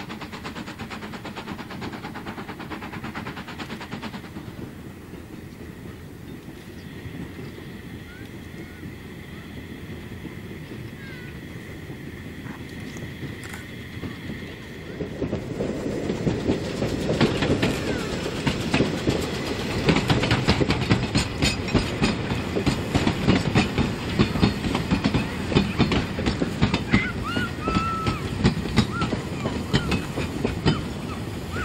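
Narrow-gauge steam train running, faint and distant at first. From about halfway it grows much louder as the locomotive and carriages pass close by, their wheels clattering rapidly over the rail joints.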